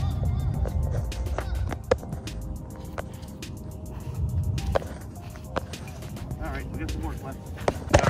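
A putter striking a golf ball once with a sharp click right at the start, followed by background music with faint steady tones and scattered clicks.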